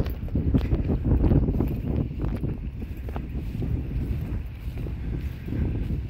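Wind buffeting a phone's microphone, a heavy uneven low rumble that does not let up.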